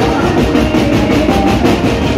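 Loud live band music driven by fast, steady drumming on a drum kit.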